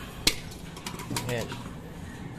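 A single sharp knock about a quarter second in, then a few lighter clicks, as a removed clutch pressure plate and the parts beside it are handled on a concrete floor. A short spoken word comes near the middle.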